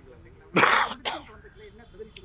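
A man clearing his throat with two short coughs, the first about half a second in and a shorter one just after a second.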